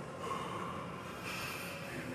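A person breathing hard while exercising, two audible breaths over a steady low background noise.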